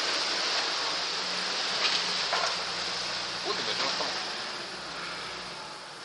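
Nissan Pathfinder's engine running under load as the SUV churns slowly through deep mud, growing fainter toward the end as it moves off.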